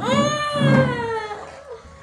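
One long, high-pitched, meow-like cry that rises a little, then slides down in pitch and fades after about a second and a half.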